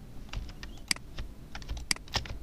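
Scattered, irregular clicks of a computer keyboard and mouse, a few single presses early on and a quicker cluster near the end, as shortcuts and tools are worked in a drawing program.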